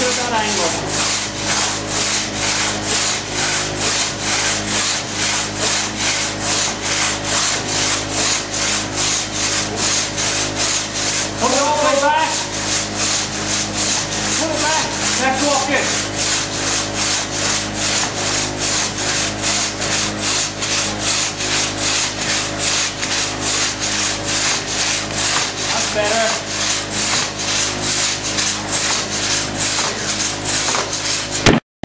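A long one-man crosscut saw rasping through a thick log in steady, rhythmic push-and-pull strokes, about two a second.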